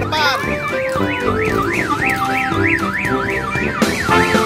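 An electronic siren warbling up and down in pitch, about three sweeps a second, over cheerful background music.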